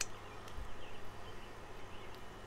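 Quiet outdoor background with a few faint bird chirps about half a second in, over a low steady hum.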